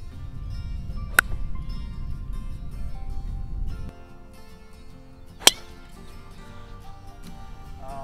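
Background music, with a single sharp crack of a golf club striking a ball off the tee about five and a half seconds in. A shorter sharp click sounds about a second in, under a low rumble that stops near the four-second mark.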